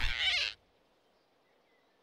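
Cartoon flying squirrel's squeal as it is grabbed round the neck, a wavering animal cry that cuts off about half a second in. Faint forest ambience with a few distant bird chirps follows.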